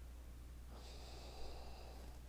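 A man's faint breath drawn in through the nose, lasting about a second and starting partway through, over a low steady hum.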